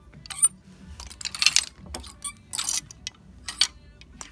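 Wooden clothes hangers scraping and clacking along a clothing rail as garments are pushed aside by hand, in a series of short clattering bursts.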